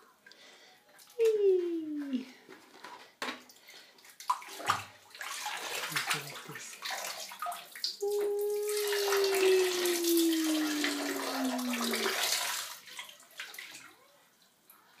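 Water poured from a plastic cup splashing into shallow bath water, a steady pour of several seconds from about the middle onward. A voice calls a short falling "wee" early on, and a long falling call runs over the pour.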